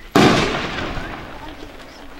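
A single loud firework bang about a fraction of a second in, its echo fading away over about a second.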